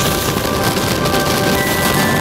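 Background music with sustained tones over a loud, steady rushing noise of skis running through powder snow and wind on a helmet-mounted camera.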